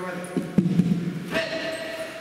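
A referee's long drawn-out shout, held on one pitch, starting a martial-arts bout, followed at about one and a half seconds by a second, higher held shout. There is a sharp knock about half a second in. The sound rings in a large hall.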